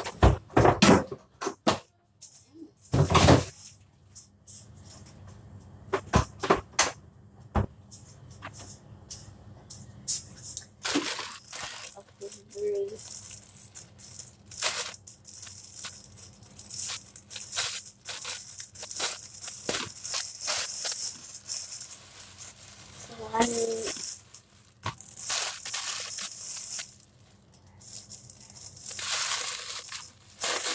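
Plastic bags crinkling and rustling as they are handled, with scattered sharp clicks and knocks throughout.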